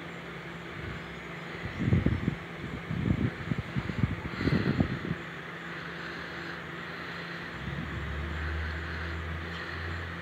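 Distant motor-vehicle noise outdoors: irregular low rumbles from about two to five seconds in, then a steady low engine drone that sets in near the end.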